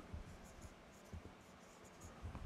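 Faint squeaks and taps of a dry-erase marker writing on a whiteboard, in a few short strokes.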